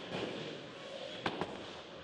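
Ten-pin bowling ball released and rolling down the lane: a steady rolling noise with one sharp knock just over a second in.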